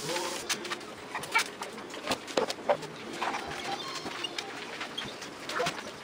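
Metallic gift-wrapping paper crinkling and rustling in short bursts as it is folded and creased by hand, with a few soft low cooing sounds.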